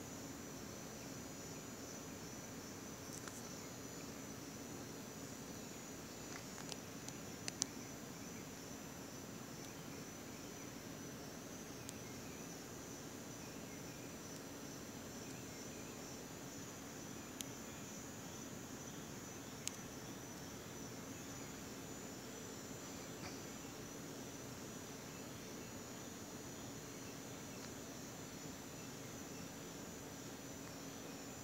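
Faint, steady chirping of crickets, with a few brief sharp clicks scattered through it.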